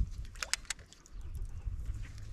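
Hooked black bass splashing at the surface beside the boat: a few short, sharp splashes about half a second in, over a low rumble.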